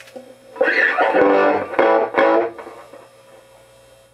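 Electric guitar played through a freshly modified 1968 Fender Bassman amplifier into a test speaker: a strummed chord just under a second in, two more attacks around two seconds, dying away before three seconds, over a steady amplifier hum.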